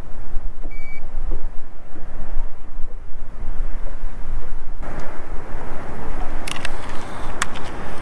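Wind rumbling on the microphone, with one short, high beep from a handheld digital fish scale about a second in. The noise turns brighter about five seconds in, and a few sharp handling clicks come near the end.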